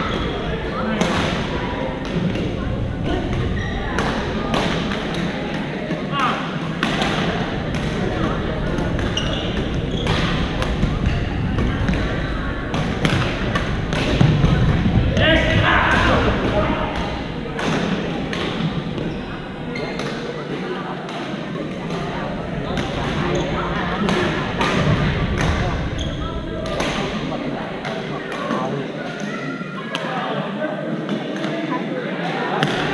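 Badminton rackets hitting shuttlecocks, sharp pops at irregular intervals from several courts, among the chatter and calls of players, echoing in a large gym.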